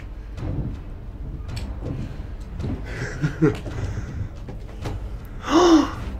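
Footsteps on old wooden stairs strewn with broken brick and plaster, with scattered crunches and knocks of debris under the shoes. Short vocal sounds from a man come around the middle, and a louder one just before the end.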